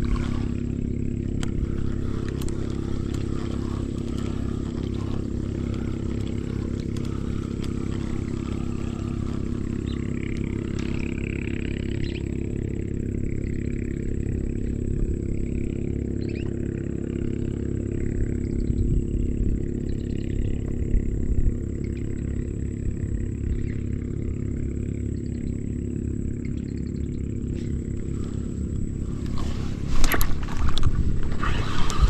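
A motor running steadily, a low even drone with a constant pitch. Fainter irregular higher noises come and go above it from about ten seconds in until about twenty-two seconds in.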